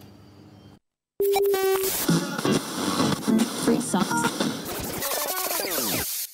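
Pre-recorded radio audio cut in: after a short dead silence, a steady tone sounds for under a second, then a busy mix of music and voices runs on.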